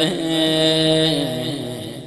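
A man's voice chanting an Arabic supplication (du'a), holding one long, slightly wavering note that fades near the end.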